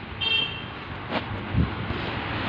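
A short, high-pitched vehicle horn toot about a quarter second in, over steady street traffic noise, with a sharp tap about a second in and a low thump near the end.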